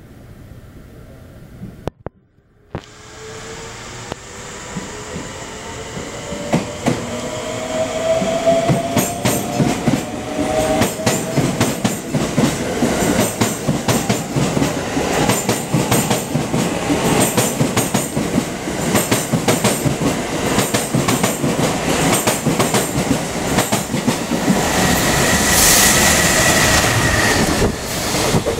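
JR Freight EF210 electric locomotive and its container train approaching and passing at full speed. A rising whine and rumble build as it nears, then turn into loud, continuous clatter of wheels over rail joints as the container wagons rush by. A high steady tone sounds near the end.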